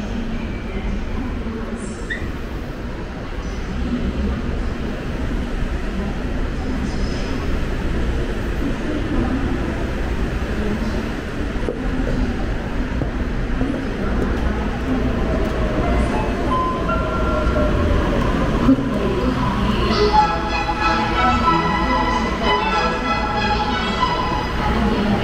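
Daegu Line 3 monorail car in motion, heard on board: a steady low rumble, with pitched tones gliding in the second half and a stack of tones over the last few seconds.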